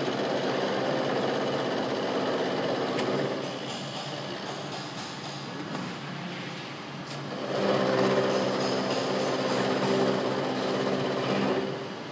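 Vertical milling machine with an end mill face milling a metal workpiece: a steady machine hum that grows louder through two cutting passes, one in the first few seconds and another from the middle until shortly before the end, with the spindle running more quietly between them as the cutter is stepped over about 1 mm for the next pass.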